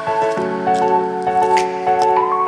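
Background music: a melody of held notes that step to a new pitch every half second or so, with a faint click about one and a half seconds in.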